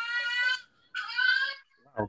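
A small girl shrieking twice: two short, high-pitched cries of about half a second each.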